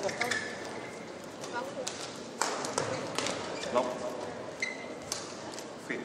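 Badminton rally: several sharp racket strikes on the shuttlecock a second or more apart, the loudest about two and a half and five seconds in, with brief squeaks of court shoes on the mat in between.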